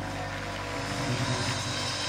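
Live jazz group of two pianos, double bass and drums holding a sustained, rumbling ending, with steady low notes under an even wash of higher noise.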